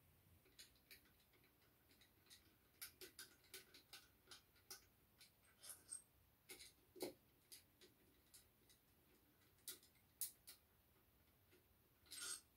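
Faint, irregular clicks and light metallic taps from a hand tool working on the engine's crankshaft and connecting-rod parts, coming in loose clusters with quiet between them.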